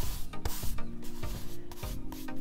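A hand rubbing dried salt crystals off watercolour paper in a few sweeping strokes, a gritty scraping.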